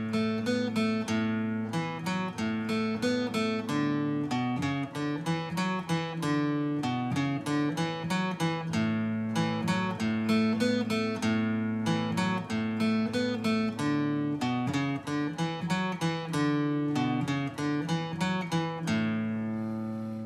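Acoustic guitar in standard tuning picked with a flat pick, playing a repeating single-note bass-line riff on the low strings, built around the open A string, at full tempo. Near the end the last note rings out and fades.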